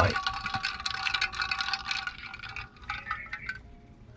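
Ice cubes rattling and clinking inside a metal tumbler of iced coffee: a quick run of many small clinks with a metallic ring for about two and a half seconds, then a few more clinks about three seconds in.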